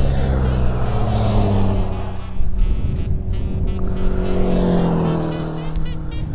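Motorcycle engine running as the bike rides past, a steady hum whose pitch sinks slowly in the second half.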